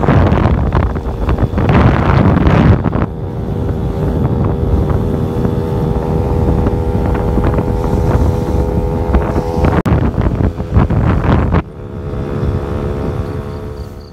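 Wind rushing and buffeting the microphone of a moving vehicle, heaviest in the first three seconds, with a steady engine hum underneath. A little before the end it drops noticeably quieter.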